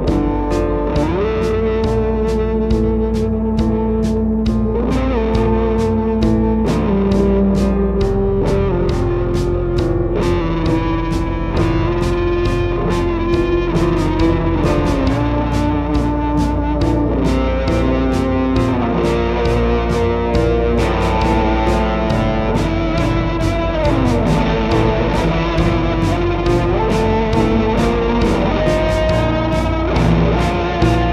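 Live rock band playing an instrumental passage with no singing: electric guitar, a steady drum-kit beat and an analog synthesizer whose notes glide slowly up and down in pitch.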